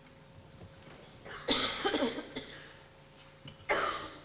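Two coughs: a loud one about a second and a half in, lasting under a second, and a shorter one near the end.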